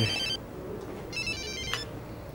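Mobile phone ringtone playing a short, high electronic melody of quick stepped notes. One phrase ends about a third of a second in, and the phrase repeats about a second in.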